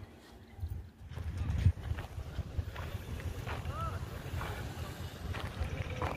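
Wind buffeting the microphone: a low, uneven rumble that comes in about a second in and keeps on.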